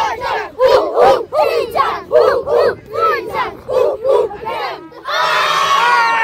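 A huddle of 10-and-under youth football players chanting together in rhythm, about two shouted syllables a second. About five seconds in, the chant ends in one long, loud group yell.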